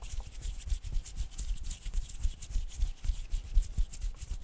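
Fingers and hands rubbing and brushing close around a Blue Yeti microphone: a continuous, fast rustling hiss with deep rumbles from the hands moving right at the mic.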